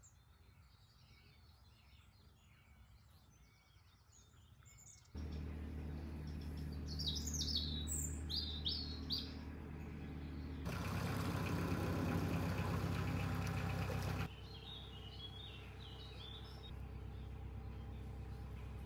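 Small birds singing and chirping. From about five seconds in, the steady low hum of a narrowboat's diesel engine runs under them, loudest for a few seconds past the middle.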